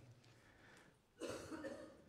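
A man coughs once, a short cough about a second in, with quiet room tone around it.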